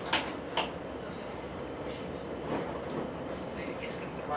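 VR Dm7 diesel railcar running along the track, a steady rumble of engine and wheels on rails, with two sharp clacks in the first second.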